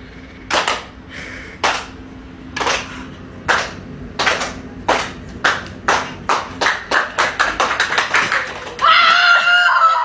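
Sharp claps, about a second apart at first and speeding up steadily into a rapid run, then a loud drawn-out shout near the end.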